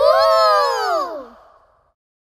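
One long, high-pitched vocal cry that rises slightly, then slides down in pitch and fades out near the end.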